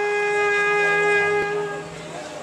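Trumpet holding one long note that fades away near the end.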